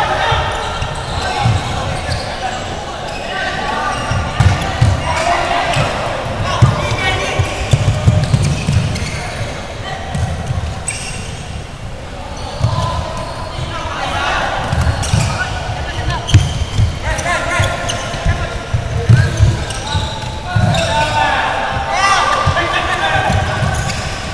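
Floorball game in a large sports hall: repeated low thuds of players' feet and play on the court, with players' shouted calls on and off.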